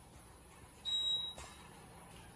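Single high electronic beep from an Otis elevator car's floor-passing signal as the car passes a floor on the way up, one steady tone lasting about half a second that ends with a short click.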